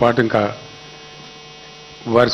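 Steady electrical mains hum, made of several fixed tones, from the microphone and sound system in a pause of a man's speech. The last syllables of his speech fade out about half a second in.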